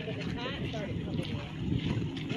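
Wind buffeting the phone's microphone, with indistinct voices in the background.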